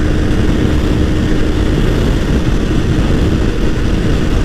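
Honda CBR250R's single-cylinder engine running steadily at road speed, under a heavy rush of wind noise on the microphone.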